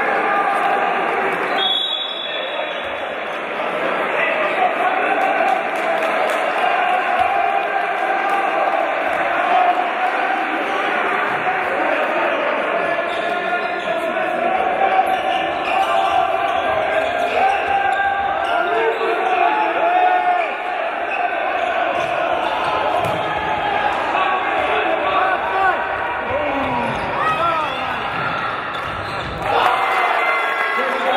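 Handball bouncing on the wooden court of an echoing sports hall, with thuds of play, under constant overlapping voices of players and spectators.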